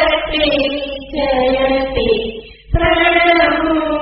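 Devotional chanting by a group of voices in unison, sustained sung lines with a short pause for breath about two and a half seconds in.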